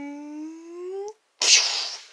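A person's voice holding one long drawn-out vocal sound that rises in pitch at its end, then, after a brief break, a short loud breathy hiss-like burst.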